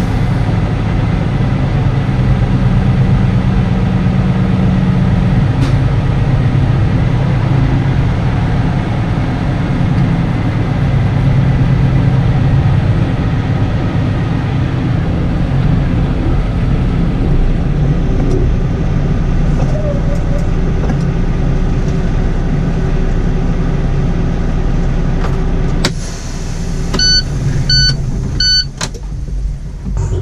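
Semi-truck's diesel engine running steadily at low speed as the rig creeps forward. Near the end the engine sound drops away under a brief hiss, followed by three short beeps.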